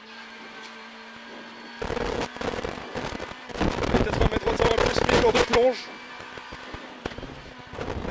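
Renault Clio R3 rally car heard from inside the cockpit at speed. A steady, quieter engine tone gives way about two seconds in to a loud stretch of hard-worked engine, filled with dense sharp cracks and knocks. It drops back to the steady tone about two seconds before the end.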